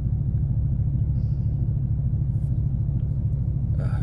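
Steady low rumble of a vehicle driving, heard from inside the cabin: engine and road noise with no change in pace.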